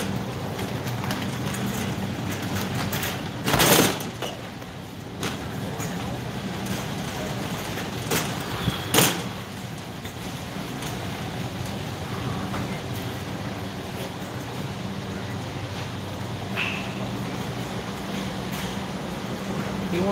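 Big-box store ambience with a steady low hum and faint background voices. A loud clatter comes about four seconds in, and two sharper knocks come about eight and nine seconds in.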